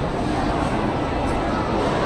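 Steady background hubbub of a large, busy indoor hall, a blur of distant voices and room noise with no single sound standing out.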